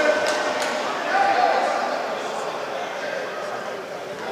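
Indoor sports-hall crowd noise: a murmur of distant voices and shouts with a few sharp knocks in the first second, fading gradually.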